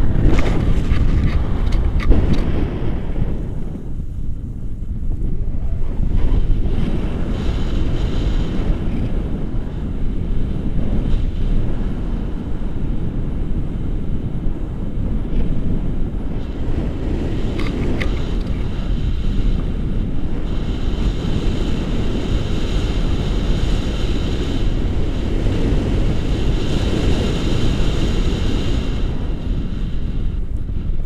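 Wind buffeting the microphone of a camera on a tandem paraglider in flight: a loud, steady, low rumble that eases for a moment about four seconds in.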